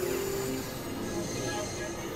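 Layered electronic synthesizer drone: several steady held tones, one high and thin, over a dense hiss-like noise bed. A short pitch glide falls onto the main tone right at the start.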